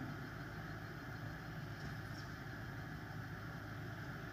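Steady, low background hum and hiss with no distinct events.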